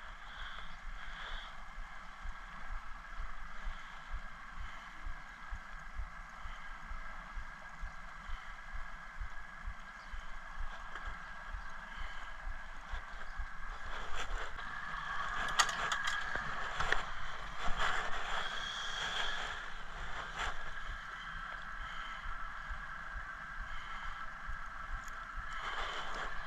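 Water lapping against a small fishing boat's hull, with a steady faint high hum underneath. About halfway through comes a stretch of clicks, knocks and rustling as fishing line and tackle are handled.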